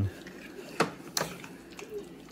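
Metal spoon clicking twice against a slow cooker's crock, about half a second apart, while stirring thick buffalo chicken dip.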